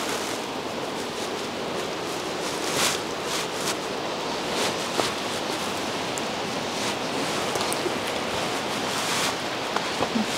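Footsteps crunching now and then on dead leaves and twigs over a steady rushing outdoor background noise.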